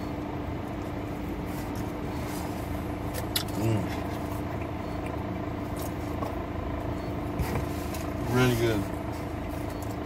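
Steady hum of a parked car's engine idling, heard inside the cabin, with two short hummed voice sounds, a few seconds in and again near the end, and a few faint clicks.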